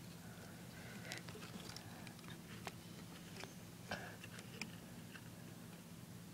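Faint scattered clicks and light rustling as a hand places an item into a clear plastic tub enclosure with loose substrate, over a low steady hum.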